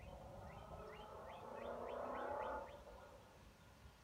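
A bird chirping: a quick run of about eight short rising chirps in the first three seconds, over a faint low rumble. A louder noisy swell rises and falls in the middle of the run.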